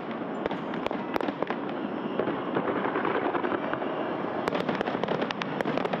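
Fireworks going off in a dense, continuous crackle, with many sharp pops and bangs scattered through it and coming thicker in the second half.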